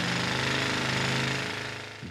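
Pneumatic rock drill running steadily as it drills into the rock face of an underground mine, easing off a little near the end.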